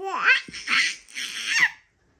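A baby laughing in three loud, breathy bursts that end just before the two seconds are out.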